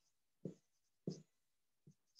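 Marker pen writing on a whiteboard: two short strokes about two-thirds of a second apart, and a fainter one near the end, with near silence between them.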